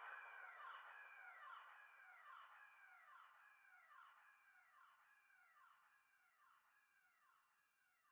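Faint psytrance synthesizer effect: a pitch sweep that arches and falls, repeating about once every 0.8 seconds, fading out gradually as the track ends.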